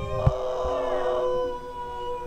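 Several voices holding long, steady notes together, drifting slowly down in pitch, with one sharp thump about a quarter second in.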